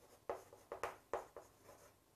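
Chalk writing on a chalkboard: a string of about six short, faint scratching strokes as words are written out.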